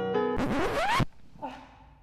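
Soft piano music broken off by a record-scratch sound effect: a short, harsh scratch with rising pitch sweeps that stops suddenly after about two-thirds of a second.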